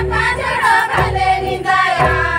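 Group folk singing in unison over hand-played double-headed barrel drums, with deep drum strokes about once a second under the voices.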